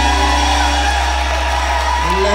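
A live rock band's final chord ringing out at the end of a song, over a loud, steady low bass note that is held throughout.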